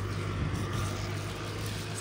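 Steady low hum of a motor vehicle running, under a wash of street noise.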